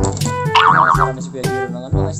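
Upbeat background music with plucked and brass-like notes, overlaid about half a second in by a short warbling cartoon sound effect that wobbles up and down in pitch.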